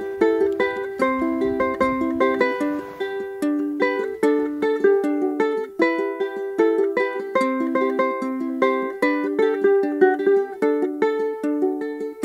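Solo ukulele picking out the song's melody in a quick, even run of plucked notes, with no singing.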